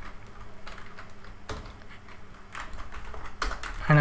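Computer keyboard keystrokes: a few scattered key taps, then a quick cluster of them near the end.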